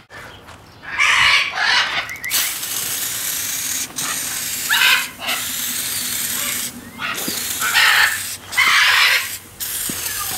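Aerosol can of oven cleaner spraying onto a cast-iron stove plate: a long hiss that starts about a second in and is broken by several short pauses, with louder bursts about a second in, around five seconds and near the end.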